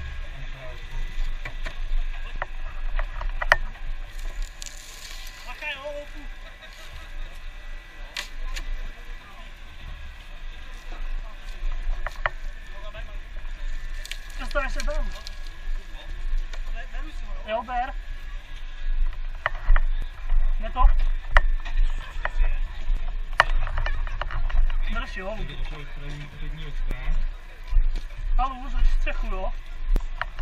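Shattered car windscreen being handled and worked loose with gloved hands: scattered cracks, clicks and knocks of glass and metal, loudest and densest about two-thirds of the way through. Voices and a steady low rumble run underneath.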